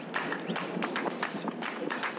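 Irregular light taps and clicks, several a second, over faint outdoor background noise.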